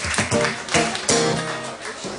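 Acoustic guitar strummed, a few chords struck in the first second or so and left ringing down.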